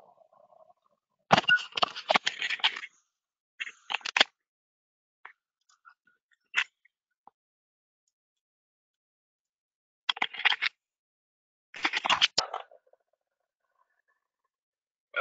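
Close, dry clicking and scraping noises in four short bursts, the first and longest about a second in, with a single sharp click in the middle and near silence between.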